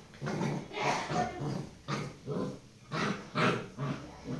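Tibetan mastiff and puppy play-fighting, growling in a string of short bursts, about two or three a second, the loudest a little before the end.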